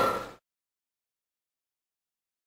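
Complete silence after the audio cuts out: a brief tail of room sound and voice from the previous clip stops dead under half a second in.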